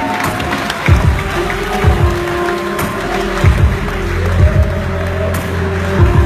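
Synthesized electronic music, the generated soundtrack of a 4 KB demoscene intro, played loud: deep kick-drum hits that drop in pitch, about one a second, under held synth tones.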